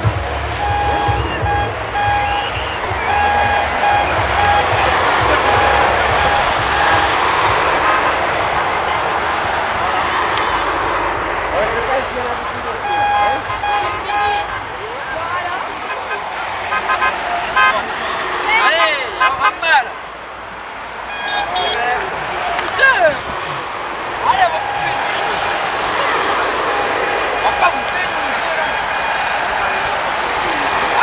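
Tour de France publicity caravan vehicles sounding their horns in runs of short repeated toots, over the voices and cries of a roadside crowd.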